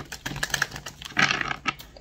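A deck of tarot cards being shuffled by hand: a quick run of light clicks and flicks, thickest just past the middle.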